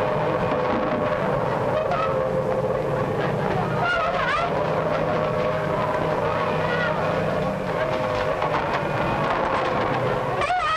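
A siren sounding a steady wailing tone throughout, sagging slightly in pitch near the end, over a low rumble, with brief shouts of people crying out.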